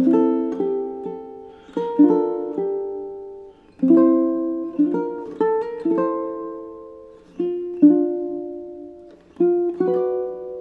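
Solo ukulele played fingerstyle at a slow tempo: plucked chords and single melody notes, each struck and left to ring and fade before the next.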